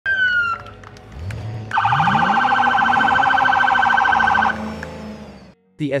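Police siren: a short falling wail, then a fast warbling tone for about three seconds before it fades. Under it, a car engine rises in pitch.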